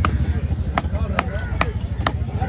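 Heavy long-bladed knife chopping fish into chunks on a round wooden log block: a run of sharp chops about every half second.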